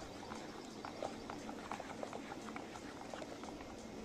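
Faint background noise with scattered light clicks and ticks, no music.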